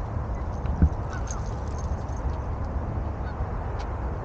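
Wind rumbling on the microphone, with one sharp thump about a second in and a few faint bird calls in the background.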